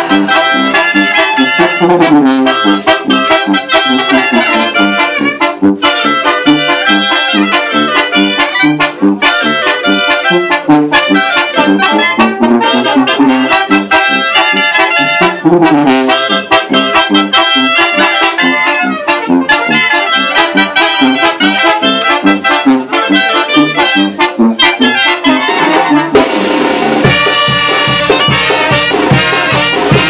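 Live Mexican brass band (banda) playing a lively tune: sousaphone bass notes on a steady beat under trumpets and other brass carrying the melody.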